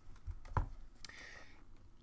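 A few faint computer keyboard keystrokes, sharp single clicks, the loudest about half a second in.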